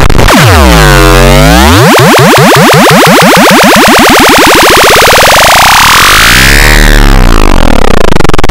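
Samsung mobile phone startup jingle, electronic and loud, warped by heavy audio effects into swirling pitch sweeps: a dip and rise about a second in, then one long rising sweep over several seconds, and another dip near the end.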